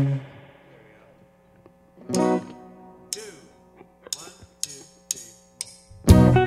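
An electric guitar chord is struck and left ringing, then a second chord about two seconds in, followed by a run of short, sharp ticks about half a second apart; the full band comes in loudly right at the end.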